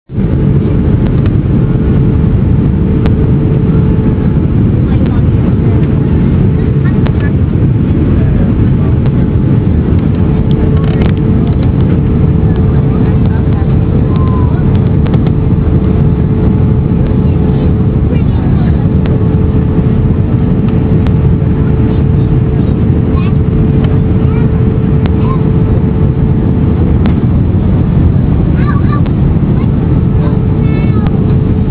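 Airliner cabin noise in flight: a loud, steady roar of engines and rushing air, with a steady hum running through it.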